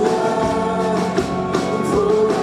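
A live worship band with a group of singers performing a song, the voices singing together over the band.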